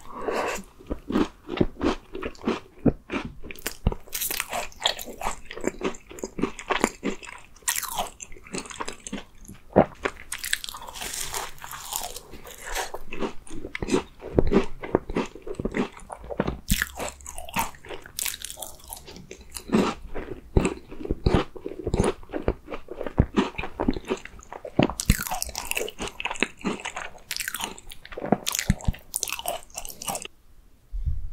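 Biting and chewing an Oreo cream tart: crisp, irregular crunches of the tart shell and chocolate cookie pieces mixed with softer chewing of the cream, several crunches a second.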